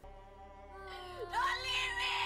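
A woman wailing in grief, her cry wavering and rising in pitch, loudest from about a second in, over sustained soft music from the film's soundtrack.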